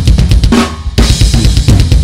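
Drum kit playing a short, loud comic sting: rapid bass and snare drum hits under cymbals, with heavier accents about half a second in and again near the end.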